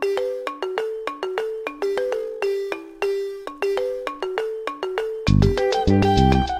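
Background music: a light melody of separate bright notes, each ringing and fading, about two a second. A fuller accompaniment with bass comes in near the end.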